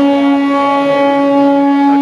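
Vande Bharat Express train horn sounding one long, steady, loud note as the train pulls into the platform.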